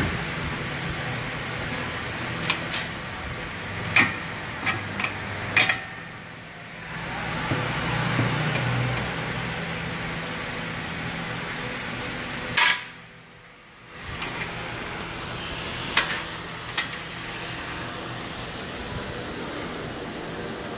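Steady low workshop hum, broken by a series of sharp metallic clicks and knocks from hand tools working the lower mounting bolt of a rear shock absorber; the hum drops away briefly twice.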